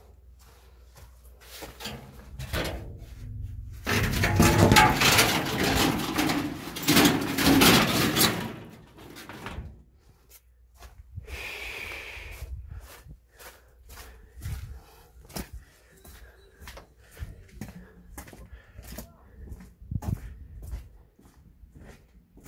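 Footsteps on dirt and gravel with scattered knocks and clatter, broken near the middle by a loud few seconds of dense rustling and scraping noise.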